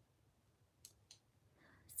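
Near silence: quiet room tone, with two faint short clicks a little under a second in.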